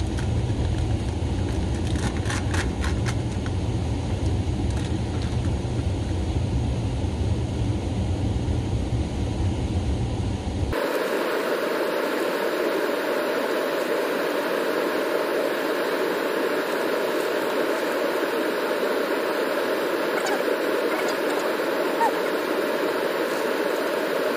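Steady rushing of river rapids, with faint crinkles of a plastic snack wrapper being handled in the first few seconds. A deep low rumble under the water noise cuts off abruptly about eleven seconds in, leaving a steady hiss.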